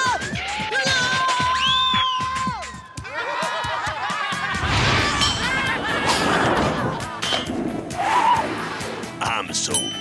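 Cartoon soundtrack: a character's drawn-out cry that slides up and down in pitch for the first few seconds, then a noisy clatter of sound effects under background music.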